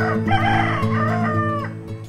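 A rooster crowing once, a single call about a second and a half long, over steady background music.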